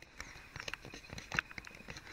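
Footsteps on a dry forest floor of needles and leaf litter: irregular crunches and sharp ticks, a few of them louder.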